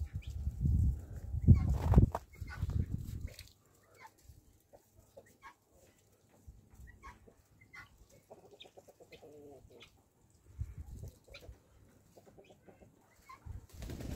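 Low rumble on the microphone for the first few seconds, then faint, scattered calls of farmyard fowl: short chirps and a brief clucking call about halfway through.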